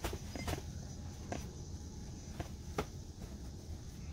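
A bath towel being handled and shaped by hand on a bed: soft cloth rustling with a handful of light taps, over a low steady hum.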